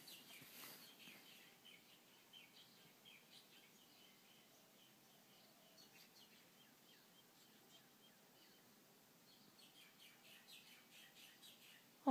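Faint chirping of small birds, with more calls near the start and in the last couple of seconds, over an otherwise near-silent room.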